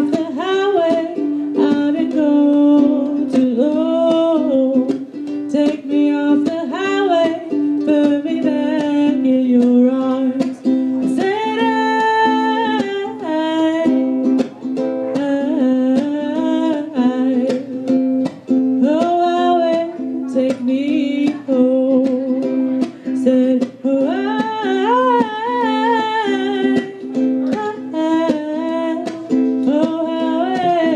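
A woman singing while strumming a ukulele, a live acoustic performance of a ballad in a small room.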